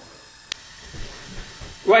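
Gas hob burner hissing faintly under a pot of heating oil, with a single sharp click about half a second in.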